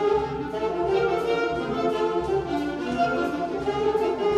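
High school concert band of clarinets, other woodwinds and brass playing a lively square-dance tune, with many parts sounding together in short, rhythmic notes.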